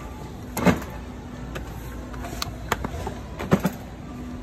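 A few sudden knocks and thuds as packs of drinks are grabbed off the store shelf and dropped into a metal shopping cart. The loudest is about half a second in, with smaller ones later and another near the end.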